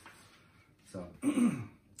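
A man says "so", then clears his throat once, about a second in.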